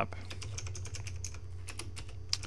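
Computer keyboard being typed on: a quick, uneven run of key clicks as a short terminal command is entered.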